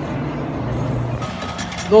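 A steady low hum, then a little over a second in the sound of a Caterpillar tracked excavator running, with clanks and rattles.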